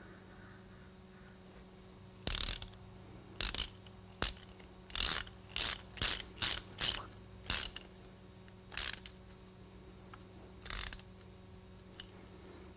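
Small hand ratchet clicking in about a dozen short, irregular strokes as it drives a thread-sealed plug into the rear vacuum port of an Edelbrock carburetor.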